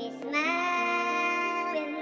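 Slow music in which a high singing voice scoops up into one long held note over soft sustained accompaniment, then falls away near the end.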